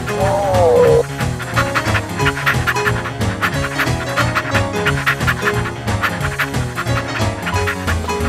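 Background music with a steady beat and melody, with a dog panting over it. A short cry falling in pitch opens it, the loudest moment.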